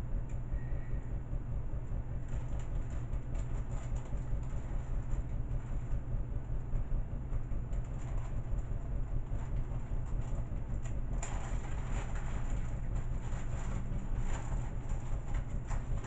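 Steady low hum with light crackling and clicking of a small plastic bag of screws being handled and opened, busier in the last few seconds.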